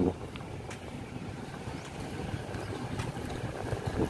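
Steady outdoor background noise: a low, uneven rumble of wind on the microphone over faint distant traffic, with a few faint ticks.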